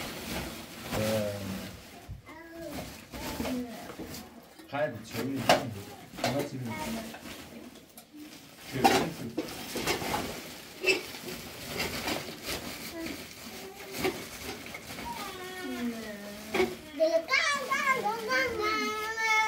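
Family members and young children talking in a small room, with a few sharp clicks or knocks between the voices. A high child's voice is heard in the last few seconds.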